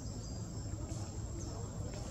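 Steady high insect chirring, crickets or cicadas, over a low rumble.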